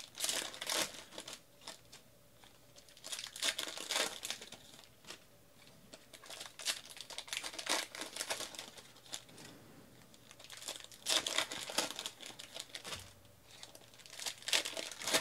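Trading cards being sorted and flicked by hand, with crinkling in irregular bursts a second or two long.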